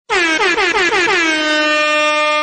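Loud air horn sound effect played as a correct-answer cue: about six quick blasts, each drooping in pitch, running into one long steady blast.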